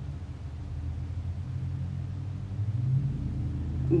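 Low engine rumble of a motor vehicle, growing gradually louder.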